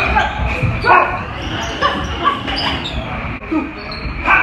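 Short shouts and calls from several people mixed with quick thuds and scuffs of padded foam batons and feet on a wooden floor during a baton-disarm drill.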